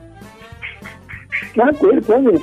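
A quiet, thin voice coming over a telephone line, then a louder voice saying "tá" near the end, with a music bed running underneath.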